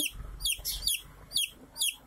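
Domestic chicken chick peeping: a steady run of about four short, high peeps, each sliding down in pitch, roughly half a second apart.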